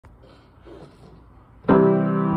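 Grand piano: after a quiet stretch of room sound, a full chord is struck suddenly about one and a half seconds in and rings on.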